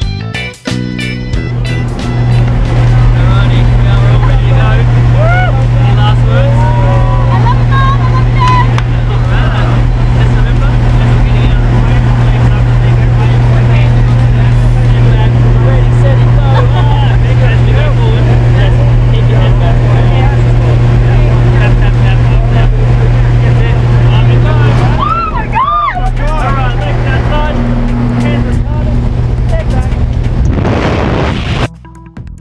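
Loud, steady drone of a light propeller aircraft's engines heard from inside its cabin, with the doorway open to the air. Voices shout over it now and then, and the drone dips briefly near the end.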